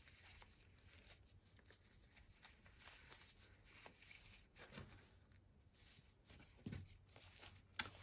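Near silence, with faint soft rustling of ribbon and fluffy fleece as a bow is tied by hand.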